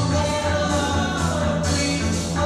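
Background music with singing.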